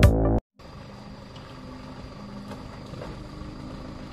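Electronic intro music cuts off abruptly about half a second in; after a moment's silence, a Mitsubishi van's engine runs steadily at low revs, much quieter than the music.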